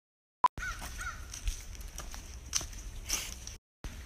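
Outdoor ambience picked up by a phone microphone, with low wind rumble on the mic, after a short beep about half a second in. A bird calls twice just after the beep, and a few knocks come later.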